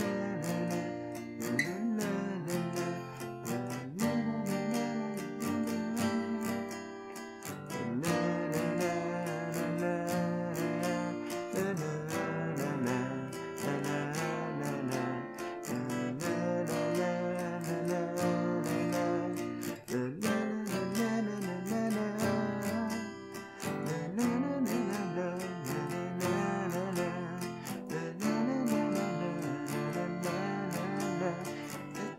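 Steel-string dreadnought acoustic guitar strummed in a repeating down-down-up-up-down-up pattern, moving through barre and open chords such as B flat, D minor 7 and D minor. There is a brief drop in level about two-thirds of the way in, at a chord change.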